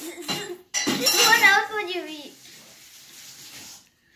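A child's voice in a loud, wordless outburst. It starts sharply about a second in and wavers up and down in pitch for over a second, then trails off into a breathy hiss.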